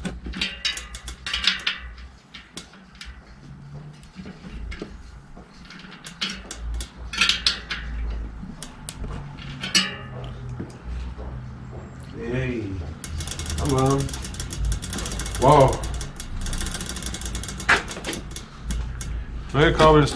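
Metal clicks and rattles from a bicycle in a workshop repair stand being worked on by hand, with a stretch of fast, even ratchet-like ticking in the second half.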